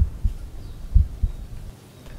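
Human heartbeat heard through a stethoscope over the tricuspid area: two lub-dub beats about a second apart, each a pair of low, dull thumps.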